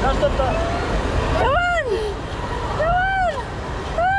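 Steady rush of water and echoing hall noise in an indoor water park. Over it a child's voice calls out three times, about a second and a half apart, each a drawn-out high cry that rises and then falls in pitch.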